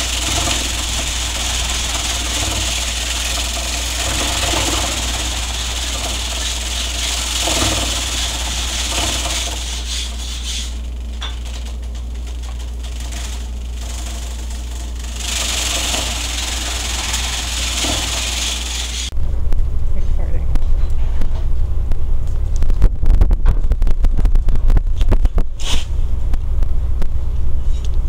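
Homemade grain thresher, a ceiling-fan motor spinning rubber stall-mat beaters inside a plastic barrel, running with a steady low hum while bundles of grain stalks are fed in, the stalks and heads hissing and rattling against the beaters. About 19 seconds in the hiss drops away and a louder low rumble with irregular knocks takes over.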